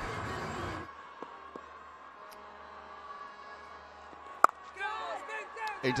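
Stadium crowd noise that drops to a quieter ground ambience about a second in, then a single sharp crack of a cricket bat striking the ball, followed by a commentator's voice near the end.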